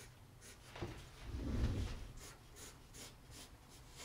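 Graphite pencil drawing on sketch paper: a run of short, faint strokes repeated evenly as sketch lines are gone over and firmed up. A soft low sound swells briefly about a second and a half in.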